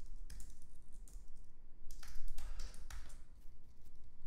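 Computer keyboard typing: irregular keystrokes, busiest and loudest about two seconds in.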